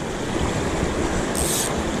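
Small mountain brook running over rocks and small cascades: a steady rush of water. A brief high hiss about one and a half seconds in.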